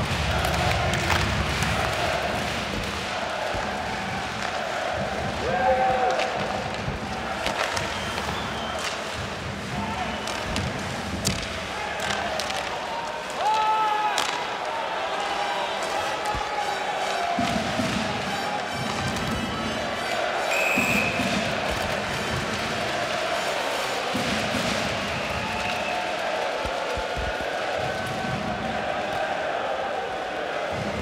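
Live ice hockey play heard in the arena: a steady crowd murmur with repeated sharp clacks of sticks on the puck and thuds of the puck against the boards.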